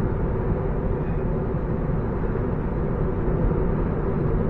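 Steady road and tyre noise heard inside the cabin of a moving car, a low, even rumble with no changes.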